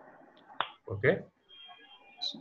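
A single sharp click, then a brief, loud voiced sound from a person, like a short murmur or half-spoken syllable.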